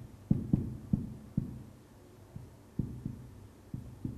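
Marker pen knocking against a whiteboard as words are written: about nine dull, low knocks at irregular intervals, the strongest in the first second and a half.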